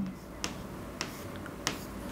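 Marker pen clicking against a whiteboard while writing: three short ticks, roughly half a second apart.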